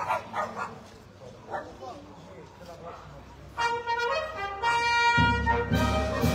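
A processional brass band strikes up about halfway through, starting on a held chord from the trumpets. The low brass comes in near the end and the band grows much louder. Faint voices are heard before the band starts.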